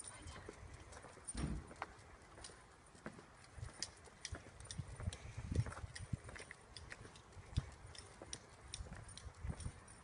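Footsteps on a paved sidewalk while walking a small dog on a leash: irregular scuffs and light clicks over a low rumble.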